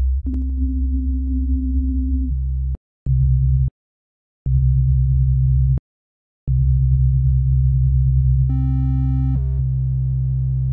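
Sylenth1 software synth playing a deep, sine-like bass: four held low notes, one to three seconds each, with short gaps between them. Near the end a brighter, buzzier layer joins over the bass and drops in pitch as its oscillator octave is lowered to -2.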